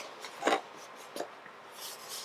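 Faint rubbing and handling of a cardboard Funko Pop box turned over in the hands, with two soft brushing sounds, about half a second and just over a second in.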